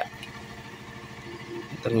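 Steady low hum of an idling engine in the background, with a fine even pulse and no sudden events.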